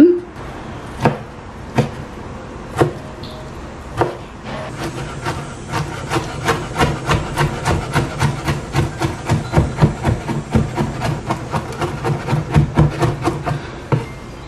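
Kitchen knife chopping peeled garlic cloves on a wooden cutting board: a few separate knocks at first, then rapid, even chopping at about three to four strokes a second from about four seconds in.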